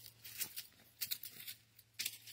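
A quiet pause in a voice recording: low hiss with a few faint, short clicks, about half a second, one second and a second and a quarter in.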